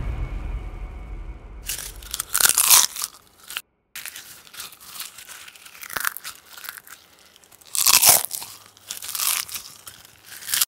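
Popcorn being crunched and chewed close to the microphone, in separate loud bursts: a long run of crunches about two seconds in, then more near eight seconds and again near the end. The tail of dramatic music fades out in the first moment.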